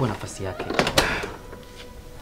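A single sharp knock on a wooden door about a second in, following a few words from a man's voice.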